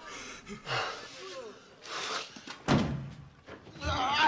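Faint voices, then a single sudden heavy slam about two-thirds of the way in.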